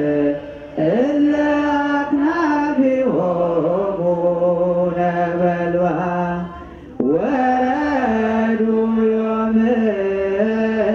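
Ethiopian Orthodox hymn chanted with long, held, wavering notes, unaccompanied, pausing briefly for breath twice, under a second in and again about two-thirds of the way through.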